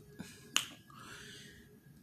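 A single sharp click about half a second in, preceded by a smaller tick, followed by a faint soft hiss.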